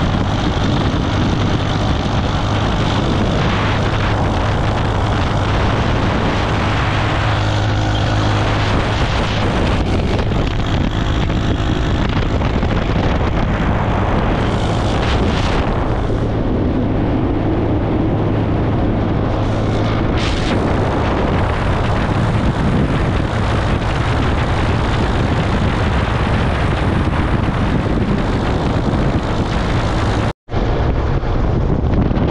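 Motorcycle engine running steadily at cruising speed, with a constant low hum under heavy wind buffeting on the microphone.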